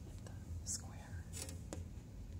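Faint whispering with a few soft hissy breaths and a light click near the end, over a low steady hum; no piano is being played.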